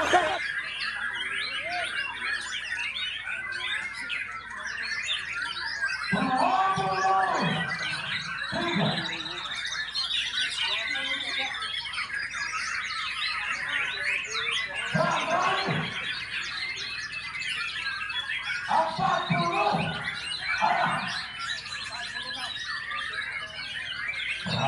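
Several white-rumped shamas (murai batu) singing at once from hanging contest cages: a dense, unbroken mix of whistles, trills and chirps. Short bursts of crowd voices break in a few times.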